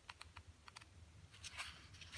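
Faint ticks and a soft rustle of paper as the pages of a 1950s digest magazine are turned by hand, with a brief louder page rustle about one and a half seconds in.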